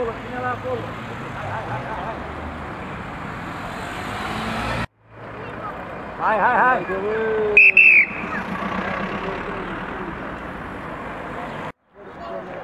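Street background noise with voices and traffic. It breaks off briefly near the middle, and about two-thirds of the way through a short, loud, high whistle sounds.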